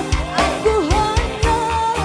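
Live dangdut band: a woman singing a melody over electric guitar, keyboards, bass and a steady drum beat.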